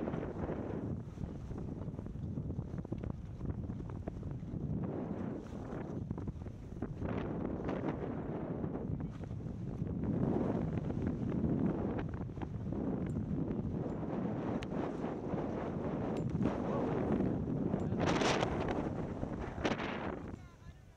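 Wind buffeting a Garmin Virb 360 camera's microphone during a ski descent, a continuous rushing noise that swells and eases, mixed with skis hissing and scraping over the snow. A sharper, brighter hiss comes near the end.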